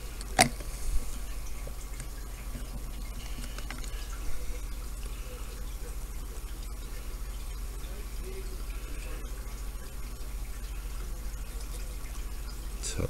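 Faint handling sounds of a thin metal tool tucking cotton wick into a rebuildable tank's deck: one sharp click about half a second in and a couple of softer ticks, over a steady low hum.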